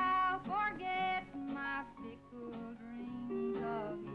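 A woman singing a country song, with acoustic guitar and a string band accompanying her.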